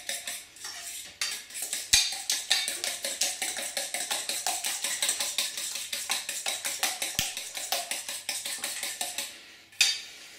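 Eggs being beaten by hand in a stainless steel bowl: a metal utensil clinks rapidly and evenly against the bowl, about seven strokes a second. The beating starts about a second in and stops just before the end.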